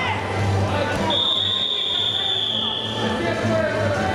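A whistle blown in one long, steady, shrill blast lasting about two seconds, starting about a second in, over background chatter in a large hall.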